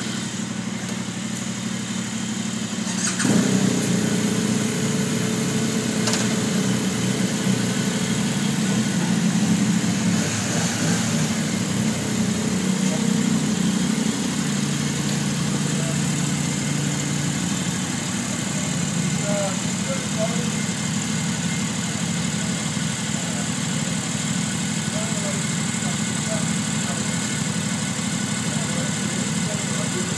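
Adventure motorcycle engines idling; about three seconds in another engine starts up and the sound gets louder, then settles into a steady idle.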